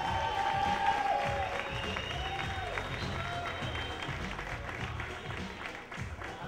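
Background music with a held, gently rising and falling melody, under audience applause.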